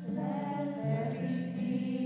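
Choir voices coming in together at the start and singing sustained, slowly moving chords over a low held note.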